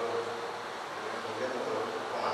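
A man's voice amplified through a hall PA system, held as a drawn-out, buzzy hum.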